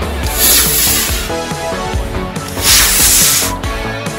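Rock background music, broken twice by the loud hiss of a model rocket motor at liftoff, each burst about a second long: the first just after the start, the second past halfway.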